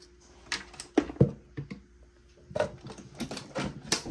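Irregular sharp clicks and knocks of hard plastic as a Ninja blender's pitcher and lid are handled and pressed into place; the blender motor is not running.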